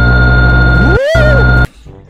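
Loud, distorted jumpscare audio from an analog-horror video: a harsh held electronic tone over a heavy low rumble, with a brief dropout about a second in and a warbling pitch that rises and falls. It cuts off abruptly shortly before the end.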